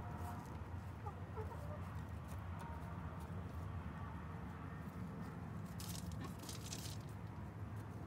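Backyard hens clucking softly as they forage, with brief scratching and pecking sounds in the grass and dirt around six and seven seconds in, over a low steady rumble.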